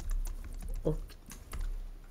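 Scattered light clicks of typing on a computer keyboard, over a steady low hum, with one short spoken word just before the middle.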